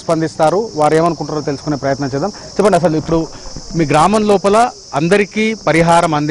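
A man talking almost without pause, over a steady high-pitched chirring of insects.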